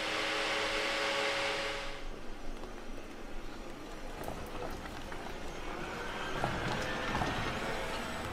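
A steady hiss for the first two seconds, then the electric Land Rover Defender 130 moving: low rumble that builds near the end, with a faint slowly rising whine.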